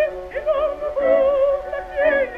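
An operatic voice holding sung notes with a wide vibrato, from a 1912 acoustic Victor disc recording of an opera duet. The sound stays within a narrow range, with little above the upper mid range.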